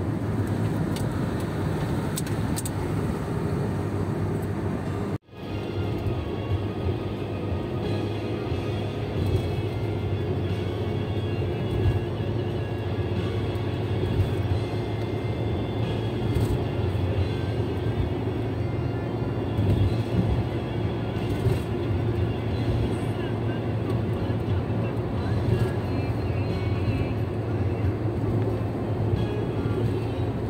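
Steady low road and engine rumble inside a car cruising on a highway, with music playing faintly underneath. The sound drops out for a moment about five seconds in, then the rumble resumes.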